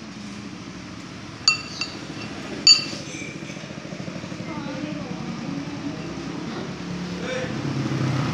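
Metal fork and spoon clinking against a ceramic soup bowl while cutting into bakso meatballs. There are two sharp, briefly ringing clinks, about a second and a half in and near three seconds, the second the loudest.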